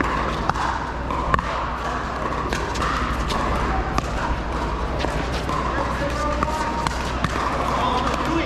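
Pickleball paddles hitting a plastic ball in a rally: several sharp pops at uneven spacing, the loudest two about a second apart near the start, over a steady bed of chatter from people around the courts.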